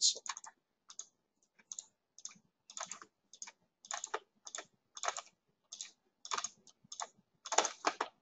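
Computer mouse clicking, short sharp clicks at an irregular pace of about two a second, as line segments are clicked out point by point in 3D modelling software.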